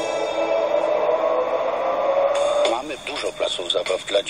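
Radio station jingle music ending on a held chord that slowly fades, then a voice starts speaking near the end.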